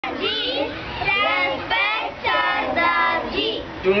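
A group of children's voices in chorus, high-pitched phrases chanted together in short bursts.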